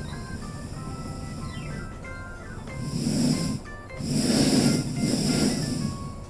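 Iwatani-Primus 2243 single gas burner, just lit, burning with a hiss that swells twice in the second half, under background music with stepping notes.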